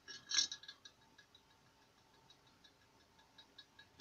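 Magnetic stirrer switched on under a glass jar of water: the spinning stir bar clatters against the glass bottom about a third of a second in, then keeps up faint, irregular ticking.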